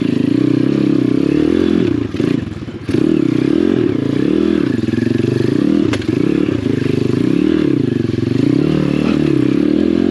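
The single-cylinder four-stroke engine of an Apollo RFZ 125cc pit bike, revved up and down again and again with short throttle bursts on a slow, technical trail climb. The revs sag briefly about two seconds in, and there is one sharp click near the middle.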